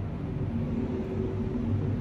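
Steady low background rumble with a faint hum underneath, even throughout.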